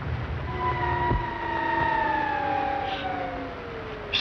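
Several held tones on the film soundtrack, sliding slowly down in pitch together, with a single dull thump about a second in.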